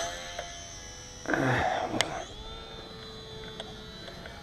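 Electric motor and propeller of a HobbyZone Sport Cub S RC plane whining steadily, fading as the plane flies away after a hand launch. A brief rush of noise comes just over a second in, and a sharp click about two seconds in.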